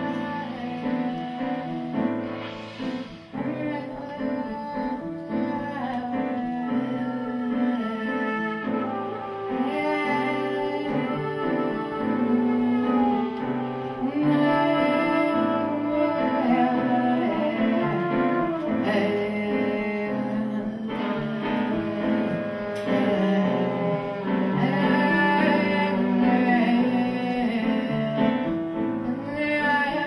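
Live jazz trio of trumpet, female voice and piano playing a melody of long, held notes over sustained piano chords.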